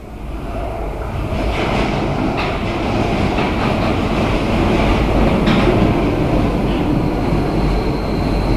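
A Paris Métro MF77 train on steel wheels approaching through the tunnel and running into the station: a rumble of wheels on rail that grows steadily louder, with a few sharp clacks over rail joints. A high steady whine comes in near the end as the train passes.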